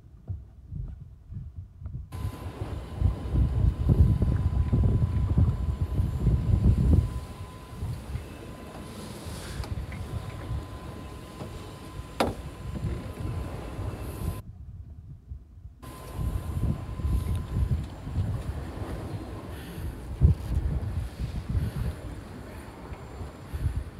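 Wind buffeting the microphone over sea and boat noise, a loud uneven low rumble that is strongest in the first third. A faint steady high tone runs under it most of the time, and there is one sharp click past the middle.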